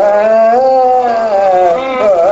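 Carnatic vocal music: a male singer holds one long note with slight wavering, then slides down into a new phrase near the end.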